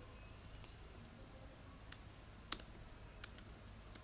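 A few scattered computer keyboard keystrokes, sharp quiet clicks at irregular spacing, the loudest about two and a half seconds in.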